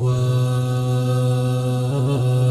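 A voice holds one long, steady note with rich overtones in an unaccompanied Pashto tarana, a chant-like sung poem. The note sustains like a drone between sung lines.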